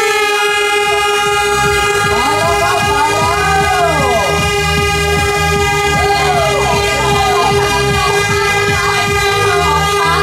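Air horn sounding one long, steady blast to start a mass run, with voices calling out over it.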